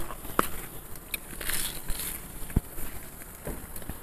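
Salt being sprinkled over beef on a barbecue grill: faint crackling and scattered light ticks, with a soft knock about two and a half seconds in.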